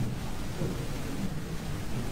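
Steady low rumble of room noise with faint, indistinct voices in the background.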